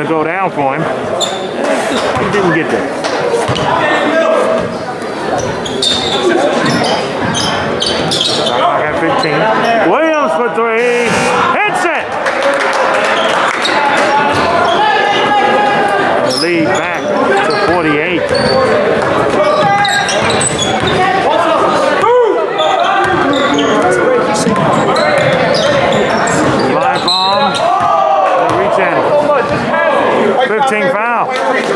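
A basketball bouncing on a wooden gym floor during play, under a steady hubbub of players' and spectators' voices echoing in the gym.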